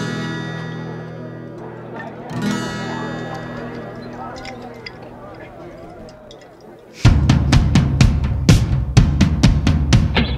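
Psychedelic rock band: a held electric guitar chord rings out and fades, is struck again about two and a half seconds in and dies away slowly, then about seven seconds in the full band comes in loud with a steady drum-kit beat of snare and bass drum.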